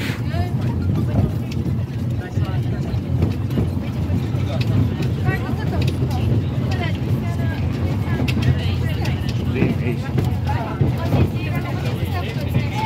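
A steady low rumble, with several voices talking and calling over it.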